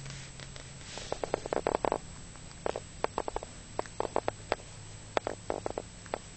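A cat licking her fur while grooming herself: several runs of quick, wet licking clicks, each run lasting under a second.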